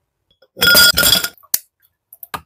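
Ice cubes clinking and clattering into a glass jar, with a brief ringing of the glass, followed by one sharp click.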